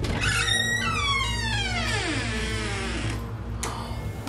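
Background music with an added whistle-like sound effect that slides steadily down in pitch over about two seconds, starting just after the start; a short swish comes near the end.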